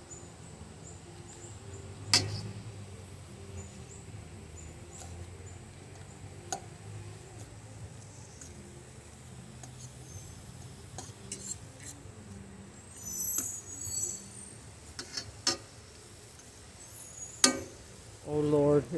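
Onion rings being pulled apart by hand in an aluminium frying pan: a few faint taps and clinks against the pan, the sharpest near the end, over a low steady hum.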